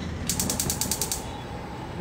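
A quick, even run of about ten sharp clicks, roughly ten a second, lasting just under a second.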